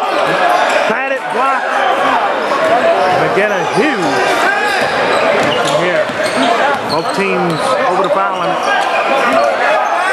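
Many voices shouting and calling out over one another in a gymnasium, with a basketball bouncing on the hardwood court.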